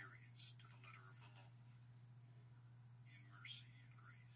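Faint whispered speech in a few short breathy phrases, over a steady low hum.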